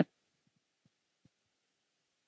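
Near silence with three faint, short low taps in the first second and a half: handling noise of fingers turning the tuning knob on an opened Gibson Robot tuner.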